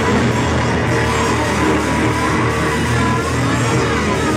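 A live rock band playing loudly, with keyboard and electric guitar over a dense, steady wall of sound.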